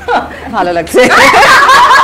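Speech, then a group of people breaking into laughter together about a second in, with talk over it.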